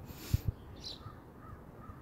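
Footsteps in deep snow with a brief rustle, and birds calling: a short high chirp just under a second in, then soft calls repeating about three times a second.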